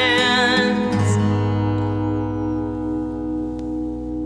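A held sung note with vibrato ends just under a second in, then a last chord is strummed on an acoustic guitar and left to ring, fading slowly, closing the song.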